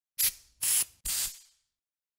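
Three quick whoosh sound effects from an animated logo intro, each a sharp burst of hiss that fades away, coming about half a second apart.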